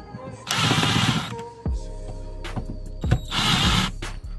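A cordless driver with a 7 mm socket on an extension runs in two short bursts, each under a second, driving the sun visor's two mounting screws into the roof bracket.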